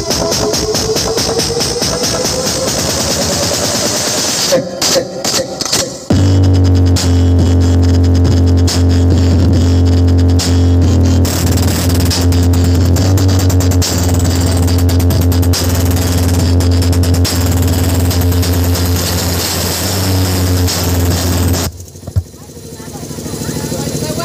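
Electronic dance music played loud through a stack of large DJ bass speaker cabinets. It opens with a rising build-up and a few seconds of choppy stop-start cuts, then drops into a heavy, steady deep bass for about fifteen seconds. The bass cuts out sharply near the end before the sound swells back.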